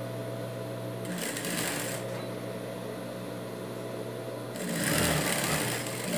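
Industrial sewing machine stitching a seam through knit fabric. Its motor hums steadily, and the stitching runs twice: briefly about a second in, then again near the end.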